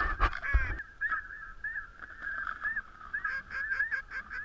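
Snow goose calls: many short, high honks overlapping without a break, with a few low thumps in the first second.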